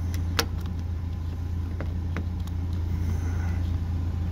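A trailer wiring plug being pushed into a pickup's bumper-mounted trailer socket, with one sharp plastic click about half a second in and two lighter clicks around two seconds in, over a steady low hum.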